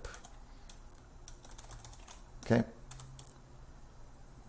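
Computer keyboard being typed on: a short run of quiet, separate keystrokes.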